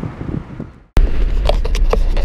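Road rumble inside a moving car's cabin that fades out to a moment of silence about a second in, then cuts back in louder and deeper, with several sharp knocks from the handheld camera.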